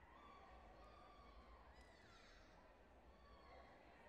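Near silence: faint sports-hall ambience with distant, indistinct voices calling out, drawn out and rising and falling in pitch.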